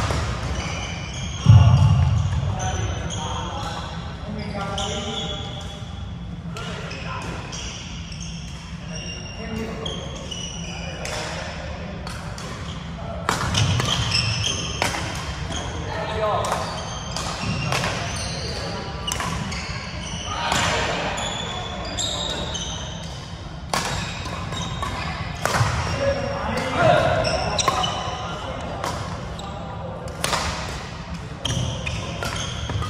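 Badminton rally in a large sports hall: sharp smacks of rackets hitting the shuttlecock, with short high squeaks of court shoes on the wooden floor and footfalls, the heaviest thud about a second and a half in.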